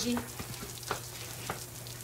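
Steady hiss of rain, with three faint ticks spaced about half a second apart and a low steady hum underneath.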